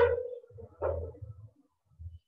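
Inflated balloons tapped by hand, two hits about a second apart. The first hit is the louder, and each gives a short thump with a brief ring. Low thuds of footsteps on the floor run underneath.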